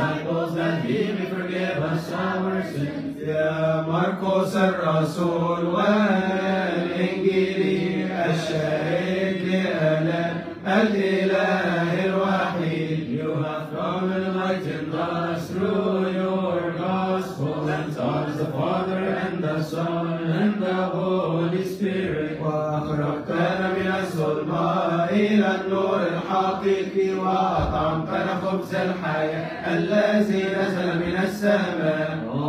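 Men's voices chanting a Coptic Orthodox vespers hymn together in long, drawn-out melodic lines over a held low note. Sharp high strikes recur through it.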